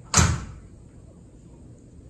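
A single sudden bang or knock just after the start, dying away within half a second, then quiet room tone.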